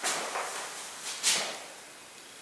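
Clothing rustle from a T-shirt being gripped and tugged at the hem: two short swishes, the louder about a second in.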